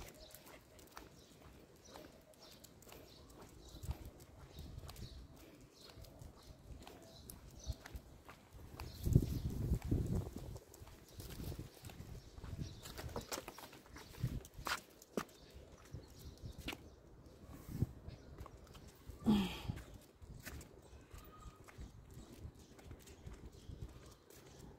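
Quiet footsteps on a paved sidewalk with scattered light clicks, and a short low rumble about nine to eleven seconds in.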